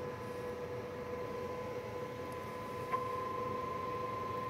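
Steady electronic test tone over a faint hiss. There is a click about three seconds in, after which the tone is louder. The tone is the audio test signal used to modulate the CB transmitter on the bench.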